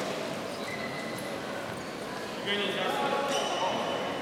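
Indistinct voices and background chatter in a large, echoing sports hall.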